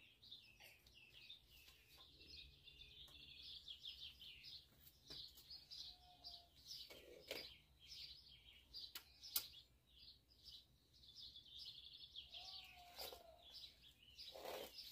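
Faint birdsong: a steady stream of quick high chirps and twitters, with a few light knocks, one about halfway through louder than the rest, as timber boards are handled.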